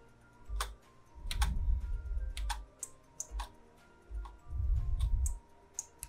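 Scattered computer keyboard and mouse clicks, several sharp ones spread across the few seconds, over faint background music that swells with a low, bass-heavy sound twice.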